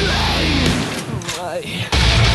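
Heavy metal music: distorted Schecter electric guitar over the full band. About a second in the band drops out to a short, quieter break with one wavering held note, then everything comes back in loud just before the end.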